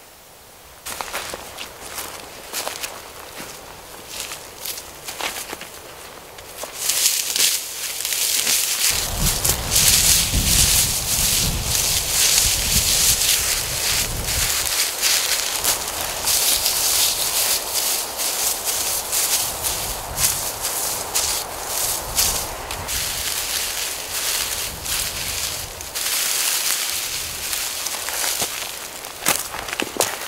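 Dead dry grass being pulled up and bunched by hand for a tinder bundle: a dense, crackly rustling that starts about a quarter of the way in and runs until near the end, with footsteps on the dry, rocky slope.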